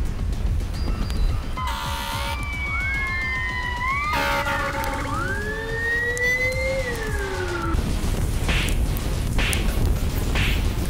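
Emergency vehicle siren wailing, its pitch rising and falling twice over a low rumble, and cutting off about eight seconds in. A few short bursts of hiss follow.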